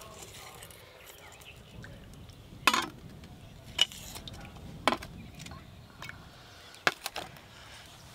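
Stainless steel tumblers lifted out of a steamer pot and set down on a stainless steel plate: four sharp metal clinks with a short ring, over a few seconds.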